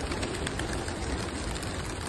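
A flock of about ninety homing pigeons taking off from opened release crates, a dense, steady flutter of many wingbeats.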